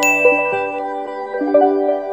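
A bright, ringing ding at the start, the kind of chime sound effect that marks an on-screen score graphic, decaying over background music of pitched notes that change every half second or so.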